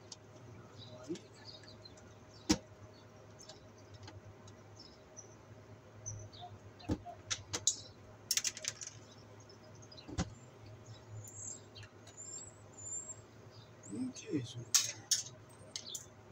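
Hand tools working the wires at a metal electrical box: scattered sharp clicks of pliers on the wire and box, the loudest about two and a half seconds in, with a few short scrapes. Birds chirp faintly in the background.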